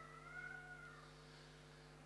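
Near silence: a steady low electrical hum, with a faint high whine that rises and then falls over about the first second before fading.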